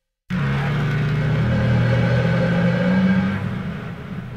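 Heavily processed cymbal sample played on a sample-library instrument, with a metallic echo effect applied: a dark, rumbling drone of steady low tones under a metallic wash. It starts suddenly a quarter second in, holds, and begins to fade near the end.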